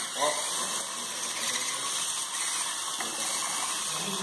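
VEX-style hobby robots driving: small electric drive motors and gear trains whirring steadily as the tracked robot rolls across a hard floor. A short voice cuts in about a quarter-second in.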